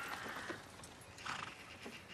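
Faint sounds of a pair of carriage horses walking and drawing a coach, with a brief call from a horse just over a second in.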